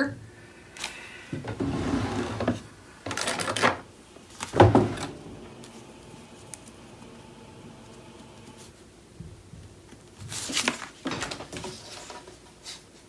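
Scrapbook paper being handled and shifted on a cutting mat: several short rustles, with one sharper knock about four and a half seconds in. Then comes a quieter stretch of a pencil marking the paper strip, and more rustling near the end as the strip is lifted away.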